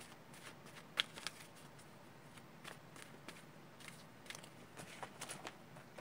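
A deck of tarot cards being shuffled and handled in the hands: faint, irregular light clicks and rustles of card against card, with a few sharper snaps about a second in and after five seconds.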